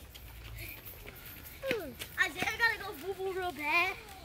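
A young child's high voice calling and chattering in short bursts, starting a little under halfway through and rising near the end; faint low rumble before it.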